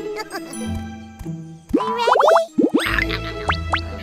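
Playful children's cartoon music with comic sound effects: a run of quick springy rising pitch glides about two seconds in, and more toward the end, over a steady bass line.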